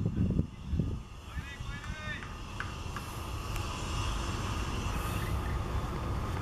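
Voices briefly at the start, then a steady low outdoor rumble that swells slightly, with a short high warbling sound about a second and a half in.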